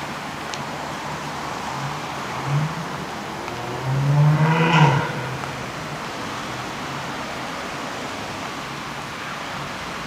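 Street traffic with a steady low engine hum; a road vehicle's engine revs up twice, briefly about two and a half seconds in and louder about four seconds in, its pitch rising for about a second.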